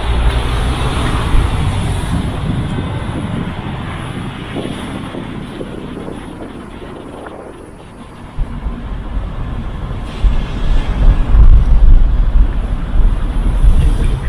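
City street traffic: car engines and tyres on the road, with wind buffeting the microphone in a low rumble. The sound fades for a while, then grows louder and gustier from about ten seconds in.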